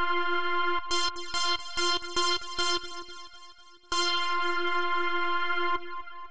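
Bright, high-pitched polyphonic synth patch played on Reason's Thor synthesizer, with its filter envelope modulating the filter 1 cutoff. A held chord gives way about a second in to a run of short, quickly repeated chords that fade out. Another held chord follows and cuts off near the end. The envelope on the cutoff makes the notes a little sharper.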